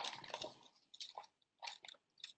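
Glossy magazine pages being flipped by hand: a run of faint, short, crisp paper rustles.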